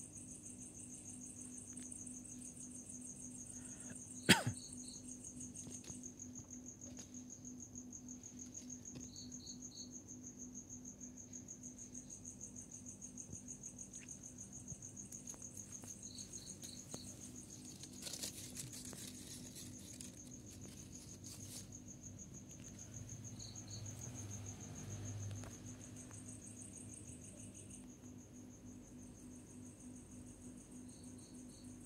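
Crickets chirping: a steady, fast-pulsing high trill, with short groups of three chirps every five to seven seconds. A low steady hum lies underneath, and a single sharp click sounds about four seconds in.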